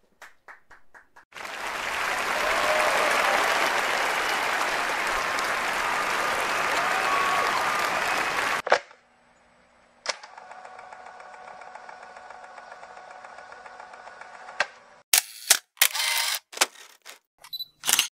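Crowd applause with some whistles in it, starting about a second in and cutting off abruptly after about seven seconds. Then a quieter, steady electronic drone, followed near the end by a run of sharp electronic hits.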